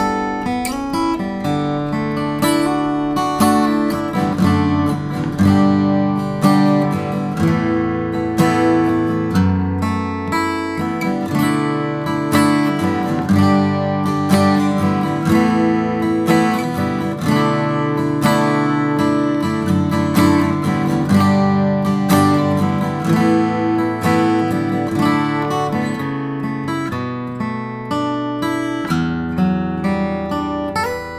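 Epiphone all-solid J-45 acoustic guitar played without a break, strummed chords mixed with picked notes.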